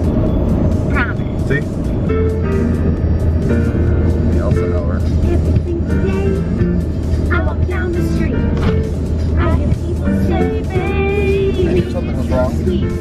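A song with a singing voice playing over the steady low drone of a car cabin on the road.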